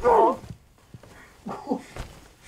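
A sharp knock, then a woman's short high cry that falls in pitch, and a second, lower pained cry about a second and a half later, amid a physical struggle.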